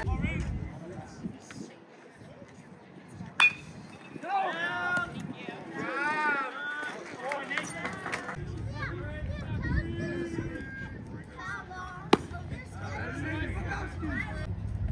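A single sharp crack of a metal baseball bat meeting a pitch about three seconds in, followed by players and spectators shouting. A second short, sharp smack comes near the end.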